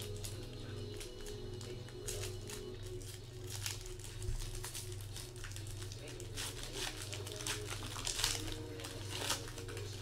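A shiny foil trading-card pack wrapper being crinkled and torn open by hand, in a string of sharp crackles that get busier in the second half.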